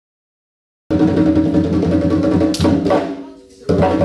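Hand drums playing a lively dance rhythm, starting suddenly about a second in. Near the end the drumming fades for about half a second, then comes back at full level.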